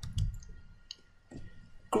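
A few faint, short clicks in a pause between spoken sentences.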